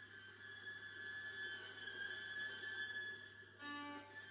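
Solo viola playing quietly in a contemporary style: a thin, high, sustained bowed tone held throughout, with a short lower bowed note near the end.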